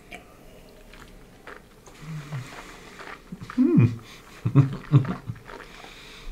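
Whisky tasting mouth sounds: faint lip and mouth clicks, then a man's low, throaty hums after swallowing. The loudest comes about halfway through, with two shorter ones just before the end.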